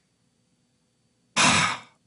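A man's breath drawn or let out audibly into a close microphone, about half a second long, after more than a second of near silence.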